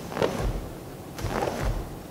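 Two full-speed karate punches thrown in a cotton gi: each a quick swish of the sleeve with a low thud of weight shifting on the foam mat, the first a little after the start and the second just past the middle.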